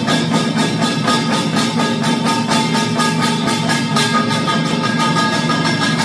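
Samulnori percussion ensemble playing: fast, steady strokes on janggu hourglass drum and buk barrel drums under the ringing metal of kkwaenggwari and jing gongs.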